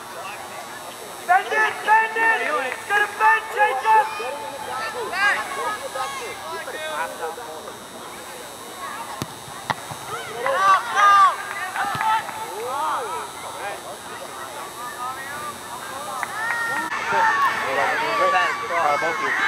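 Voices calling and shouting across an outdoor soccer pitch during play, several at once and not clearly worded. They come in bursts with quieter lulls in between.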